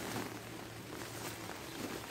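Light rain falling steadily, a soft even hiss.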